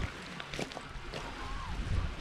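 Wind rumbling on the microphone, with small lake waves washing against a stony shore and a few faint ticks.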